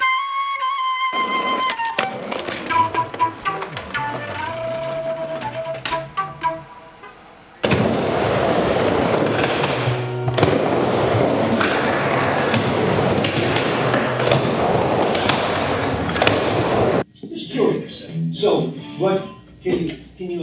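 A flute phrase ending about a second in, then several seconds of quieter instrumental music. Then skateboard wheels roll over a concrete bowl for about nine seconds, with a knock partway through, and stop suddenly. A few short, broken sounds follow near the end.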